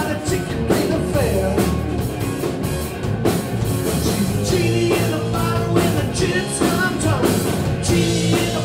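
Live rock band playing amplified: electric guitars, bass guitar and a drum kit, with a steady driving beat.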